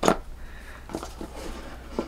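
Hands working a small spray bottle out of its cardboard box: a short, sharp scrape right at the start, then faint rustling and scratching of the packaging about a second in.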